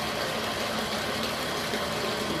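Bathtub faucet running water into a plastic bucket: a steady hiss of water filling the bucket.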